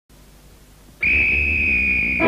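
Faint tape hiss, then about a second in a single high whistle note starts abruptly and holds steady at one pitch.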